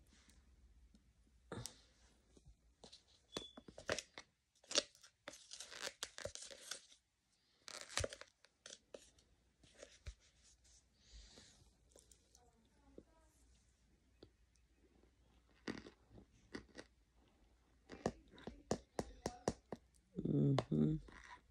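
A hard, dry block being snapped into chunks and crunched close to the microphone: a string of sharp, crisp cracks scattered throughout, some in quick clusters.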